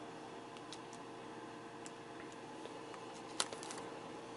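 Quiet handling noise: a few soft ticks of trading cards being moved about over a faint steady hum, then a brief crinkle-and-click cluster about three and a half seconds in as a foil booster pack is picked up.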